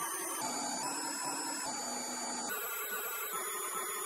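Stepper motor running, its whine jumping to a new pitch every half second or so as the step rate changes.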